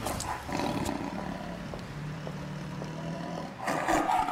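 A lion's low, drawn-out growl.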